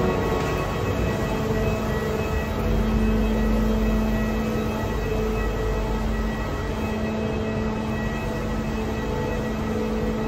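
Steady airport apron machinery hum: a low mechanical drone with a few steady tones, heard from inside a jet bridge. A deeper rumble swells a few seconds in.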